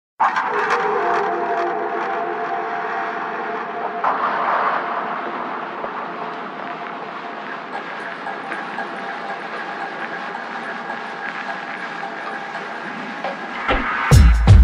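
Ambient noise intro to an electronic track, a steady running sound like a train on rails. It carries a few held tones and some clicks in the first seconds, and a thin high whine comes in about eight seconds in.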